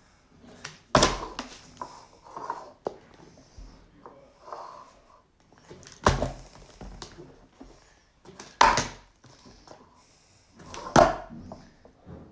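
A partly filled plastic water bottle is flipped and hits a plastic cup and a wooden table: four loud thuds a few seconds apart, with smaller knocks and handling sounds between. The last thud, near the end, is the bottle landing in the cup.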